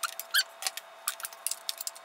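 Metal wire beaters clicking and rattling against a plastic electric hand mixer as they are pushed and wiggled into its sockets: a string of irregular sharp clicks with a few short metallic pings. The beaters are not seating easily.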